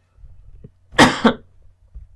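A person coughing: a loud double cough about a second in.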